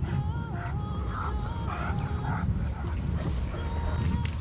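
Background music with a stepped melody, and a dog giving a few short, high yips between about one and two and a half seconds in, over a low rumble.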